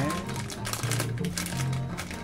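Plastic noodle packaging crinkling and clicking in the hands as it is handled, over background music with a steady low bass line.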